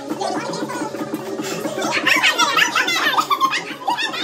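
A woman laughing loudly over background music with a steady beat; the laughter comes in about halfway through.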